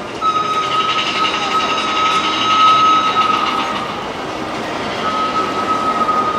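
Roller-coaster mine train running along its track, with a steady high squealing tone over the rumble. The squeal starts just after the beginning, fades out a little past three seconds in, and returns near the end.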